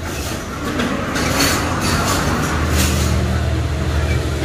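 Eating noise from noodle soup: airy slurping with two louder slurps, over a steady low hum that grows louder in the second half.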